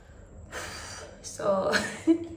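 A woman's short, breathy vocal sound about a second and a half in, after a second of faint room hiss.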